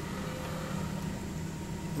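Steady low background hum of room tone, with no distinct event.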